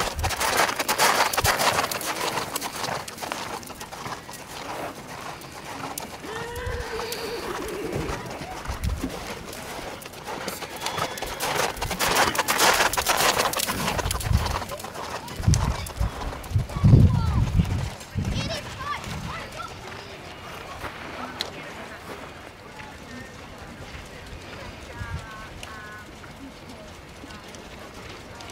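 Horse's hoofbeats as it canters round a show-jumping course on a sand arena, with a cluster of loud low thumps about halfway through and quieter going near the end.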